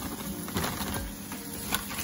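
Frozen cut okra poured from a plastic bag into a pot, the pieces dropping in with light, irregular tapping and rattling.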